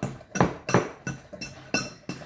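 Metal fork clinking against the inside of a mixing bowl as it mashes overripe bananas to a cream to break up the lumps: several sharp clinks, unevenly spaced.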